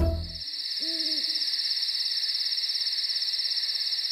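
Cartoon night-time sound effects: crickets chirping in a steady, fast, even pulse, with a single short owl hoot about a second in. Music cuts off in the first half second.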